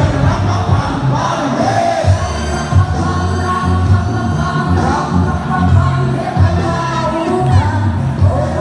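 Loud live music over a PA system: a beat with a heavy bass line under an amplified singing or rapping voice.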